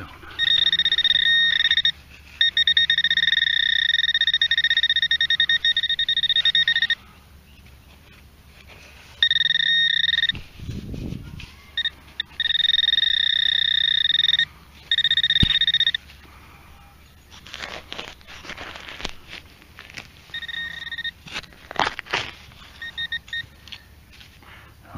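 Garrett Pro-Pointer AT pinpointer sounding its steady high alarm tone in long stretches, cutting on and off as it is moved over and away from a metal target in the soil. In the last few seconds the tone returns only briefly among scraping and rustling of dirt and grass.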